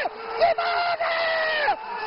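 Football TV commentator shouting a player's name in a long, held, high-pitched call that falls off in pitch at its end, over crowd noise in the stadium.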